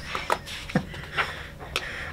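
Laughter tailing off into a few short breathy exhales and sniffs through the nose, spaced about half a second apart.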